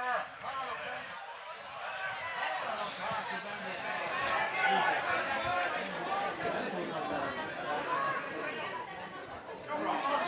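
Several voices talking and calling out over one another: chatter from the spectators and players at a small football ground.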